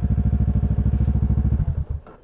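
Kawasaki motorcycle engine idling, then switched off: the steady running dies away near the end.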